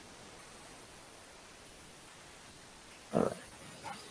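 Faint, steady hiss of room tone from a call microphone, then a single spoken word about three seconds in.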